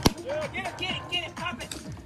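A balloon bursts with a single sharp bang as a chimpanzee stamps on it, just at the start. It is followed by background music with voices.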